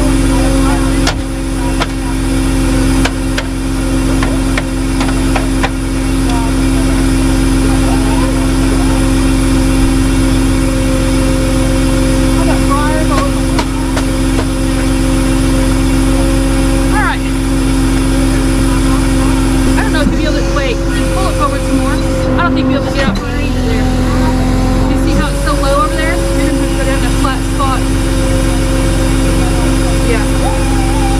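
A vehicle engine running steadily at one even pitch, its note dipping briefly a little past the middle before settling again.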